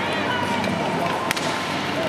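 Arena crowd noise and spectator voices, with one sharp crack of an ice hockey stick striking the puck about halfway through.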